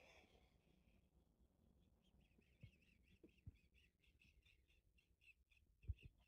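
Near silence, with a faint high chirp repeating about four times a second and a few soft knocks, the loudest near the end.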